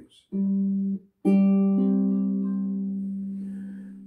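Five-string Baton Rouge ukulele strummed: a short chord stopped after under a second, then a second chord left ringing and slowly dying away.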